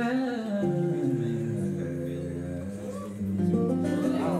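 Acoustic guitar strummed under a man's voice holding long wordless notes, with short slides in pitch.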